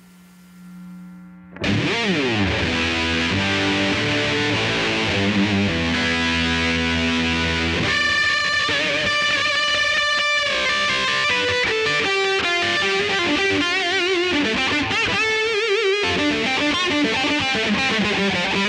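Epiphone electric guitar played through a ProCo RAT distortion pedal with its distortion knob turned up: a soft held note, then from about a second and a half in, loud, heavily distorted riffs and lead lines, with bent, wavering high notes in the middle.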